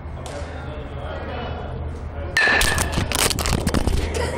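A bat hitting a pitched ball, with a brief ringing ping, and the ball striking the phone filming through the cage netting about two and a half seconds in; a second and a half of knocking and rattling follows as the phone is knocked about. A steady low hum runs under the first part.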